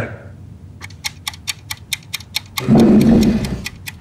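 Fast, even ticking like a clock, about five or six ticks a second, building tension under the scene. Near the end a loud, low rumbling swell rises and falls away within about a second.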